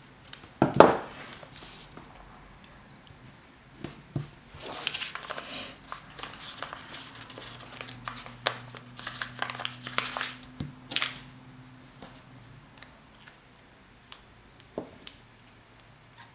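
Small scissors snipping a paper sticker sheet, with a sharp snip about a second in, followed by rustling and crinkling as the sticker sheet is handled and stickers are peeled off, with scattered light clicks.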